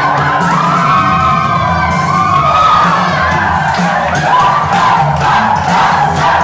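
Loud dance music with a pounding beat, with a group of dancers cheering and whooping over it.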